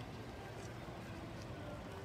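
Steady outdoor street ambience: a low hum of traffic with faint voices in the distance.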